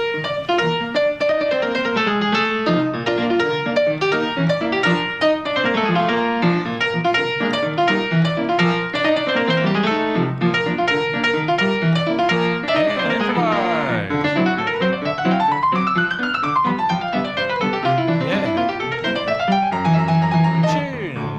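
Piano played fast in a jazzy bebop style, with dense chords and quick runs and, in the second half, sweeping runs up and down the keyboard. It is a piece heard only once, played back by ear note for note with improvised flourishes.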